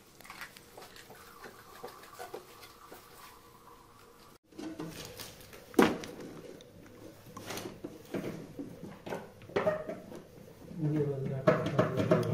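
Hard plastic purifier parts being handled: scattered clicks and knocks as a white plastic fitting is turned and set against the purifier's plastic cover, with one sharp click about six seconds in. A voice comes in near the end.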